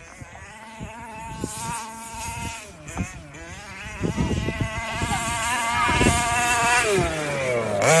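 HPI Baja 5B 1/5-scale RC buggy's two-stroke petrol engine buzzing at high revs. Its pitch rises and dips with the throttle, and it grows steadily louder as the buggy comes closer. Near the end the pitch drops sharply as it backs off.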